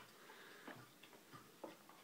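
Near silence with a few faint, irregular clicks of a child chewing a crunchy deep-fried smelt.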